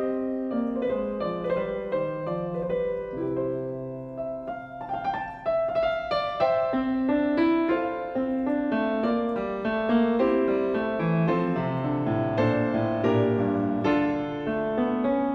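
A Fazioli grand piano playing a classical piece, a melody over moving lower notes. It dips briefly in loudness about four seconds in, then grows fuller again.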